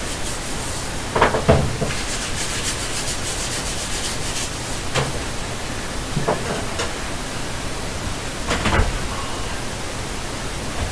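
Ghost-box app sweeping its sound banks: a steady static hiss broken by short, choppy snippets of sound about a second in, near five and seven seconds, and just before the ninth second.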